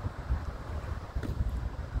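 Wind buffeting a phone's microphone outdoors: a low, uneven noise with no clear tones, and a faint tick about a second in.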